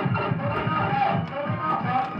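Electronic game music from a '5.6.7 Bola' coin-operated pinball slot machine: a quick repeating beat of about four pulses a second under held electronic tones, playing while its lamps pick the numbers.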